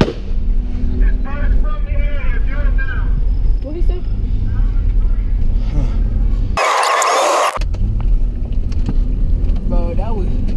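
Car driving, heard from inside the cabin: a steady low engine and road rumble, with muffled voices about one to three seconds in. About seven seconds in, a loud burst of harsh hiss-like noise lasts about a second while the low rumble drops out.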